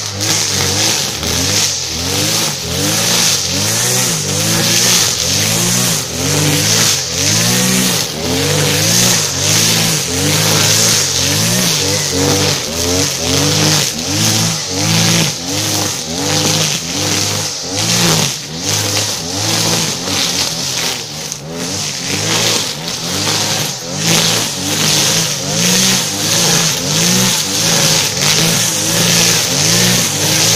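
Villager BC1900X two-stroke petrol brush cutter running at high revs while it cuts tall, dense grass. Its engine note dips and recovers about once a second as the cutting head bites into the grass on each swing.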